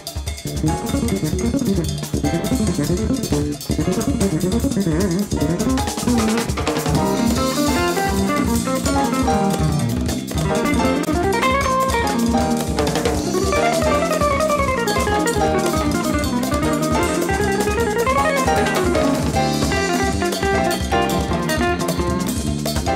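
Jazz-fusion band recording with drum kit, electric bass, guitar and keyboards playing over a steady drum beat. Through the middle a fast melodic line runs up and down in quick runs of notes.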